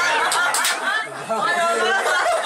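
Chatter of a group of people, several voices talking over one another at once.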